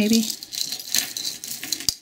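Tangled metal jewelry chains and charms jingling and clinking as hands sift and lift them from a pile: a dense run of small metallic clicks, with one sharper click near the end.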